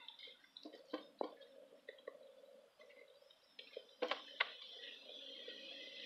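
Goat eating shaved carrots from a plastic feeder: faint, scattered crunches and clicks of her mouth in the bin, with two sharper clicks about four seconds in.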